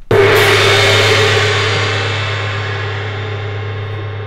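A gong struck once with its white mallet, loud, then ringing on with many overlapping tones and slowly fading.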